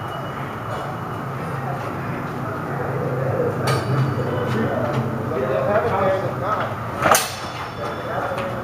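Longswords clashing in a sparring exchange: a sharp strike with a short ring a little past halfway, then a louder, brighter clash near the end. A steady low rumble runs underneath.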